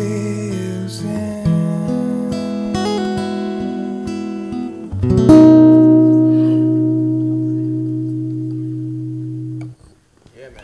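Acoustic guitar playing the closing chords of a song. A last strummed chord comes in loud about five seconds in, rings out and slowly fades, then is stopped abruptly just before the end.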